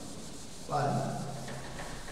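Chalkboard duster rubbing across a blackboard, wiping off chalk writing. A short murmur from a man's voice a little under a second in.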